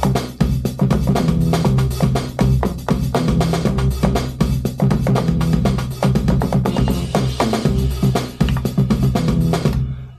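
Akai MPC One playing back a drum-kit pattern with a deep synth bass line over a steady beat, while the bass is played in on the pads during recording.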